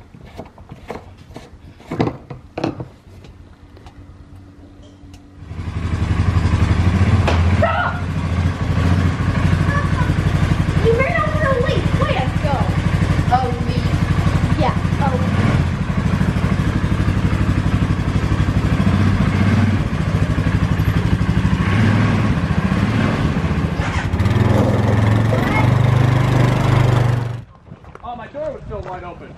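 Four-wheeler (ATV) engine running steadily, coming in loud about five and a half seconds in and stopping abruptly just before the end, with a deeper, louder note in its last few seconds. Before it, only a few faint clicks and knocks.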